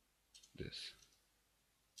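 Near silence, broken once about half a second in by a brief soft click with a short hiss.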